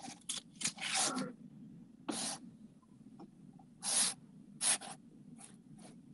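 Several short, scattered rustling and hissing noises, the kind made by handling paper or breathing close to a headset microphone, over a faint steady low hum on a video-call line.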